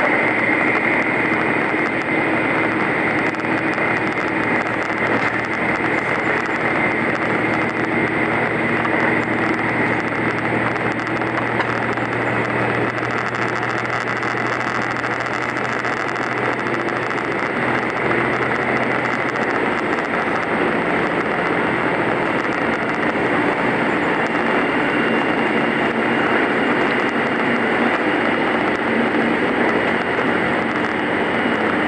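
Steady running noise inside the Setsugekka, an ET122-based diesel railcar, passing through a tunnel. The wheels run on the rail and the diesel engine drones, with a steady high ring over the rumble.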